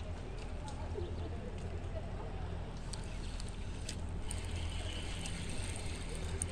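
Spinning reel being cranked as a hooked bass is reeled in, with faint ticks over a steady low hum.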